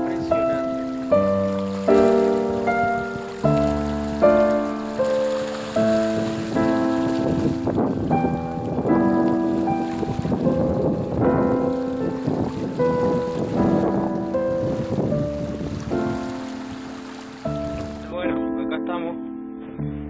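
Background instrumental music: struck notes and chords, a new one about every second, each dying away.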